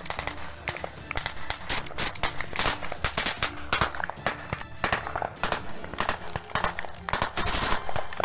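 Automatic small-arms fire in a firefight: rapid, irregular rifle shots, several a second and close by, with a longer continuous burst near the end.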